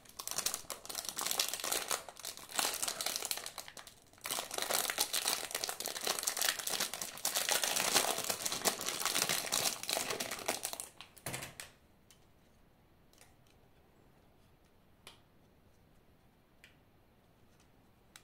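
Thin clear plastic bag crinkling as it is worked off a small plastic battery box, in two spells with a short break about four seconds in, stopping after about eleven seconds. After that, only a few faint clicks as the box is handled.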